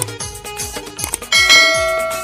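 Instrumental music with a steady drum beat. About 1.3 s in, a bright bell chime strikes once and rings on, fading slowly: a subscribe-button notification sound effect laid over the music.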